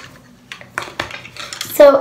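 Plastic pens and drawing pieces clicking and clattering as they are handled and packed together on a tabletop: a string of short, light clicks.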